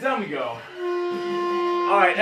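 Background music, with a single note held steady for over a second in the second half.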